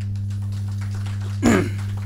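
Steady low electrical hum, with one short, loud laugh about one and a half seconds in.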